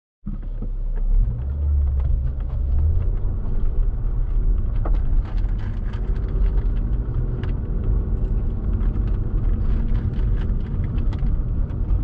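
Car heard from inside the cabin while driving: a steady low engine and road rumble, heaviest in the first few seconds as the car pulls away, with scattered light clicks over it.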